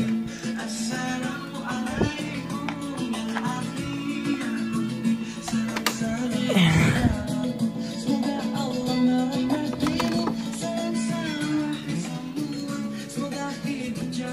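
Background music with a plucked guitar.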